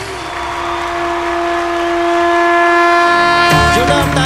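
A female singer holds one long, steady note to end a Bhojpuri folk song, over a growing haze of audience noise. Applause breaks in near the end.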